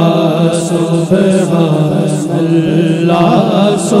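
Naat sung without instruments: a male solo voice holding a long, wavering melodic line without clear words over a steady hummed vocal drone from backing singers.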